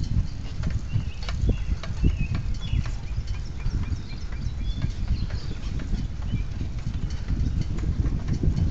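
Low rumble of wind and handling noise on a moving phone microphone, with scattered ticks and knocks and a few short high chirps in the first half.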